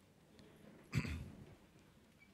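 A single short cough picked up by the microphone about a second in.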